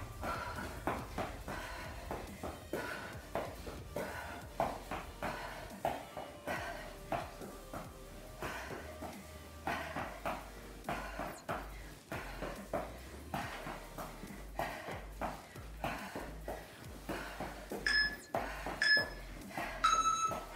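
Trainers tapping and stepping on a gym floor in a quick, even rhythm, about two steps a second. Near the end, three short electronic beeps a second apart: an interval timer counting down the last seconds of the round.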